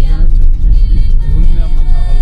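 Steady low rumble of a car driving on a gravel road, heard from inside the cabin, under music with wavering melodic lines.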